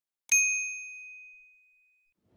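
A single bright bell ding sound effect for clicking a notification bell icon: struck sharply about a third of a second in, one clear ringing tone that fades out over about a second and a half.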